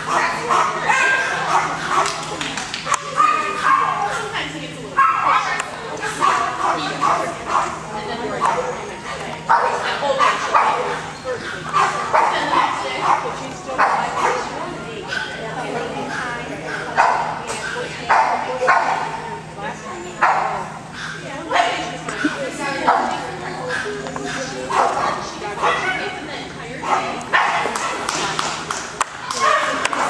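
Dog barking and yipping in repeated short bursts, over people talking and a steady low hum.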